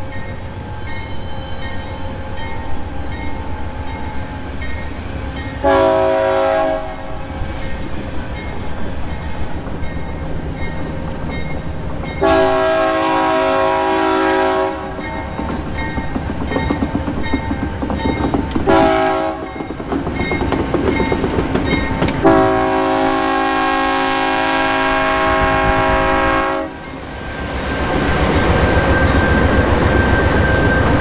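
A diesel freight locomotive's multi-note air horn blows four times as the train approaches, the last blast held longest, in the long-long-short-long pattern sounded for a road crossing. Under it the engines and wheels rumble steadily, growing louder near the end as the locomotives pass close by.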